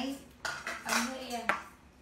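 Glass jars knocking together, with one sharp clink about a second and a half in.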